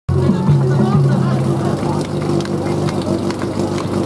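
Portable fire-pump engine running steadily at one pitch, with a voice over a loudspeaker on top.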